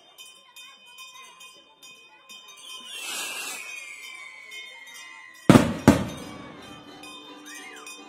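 A skyrocket (cohete) going up with a hiss and a whistle that falls in pitch, then two sharp, loud bangs close together about five and a half seconds in as it bursts.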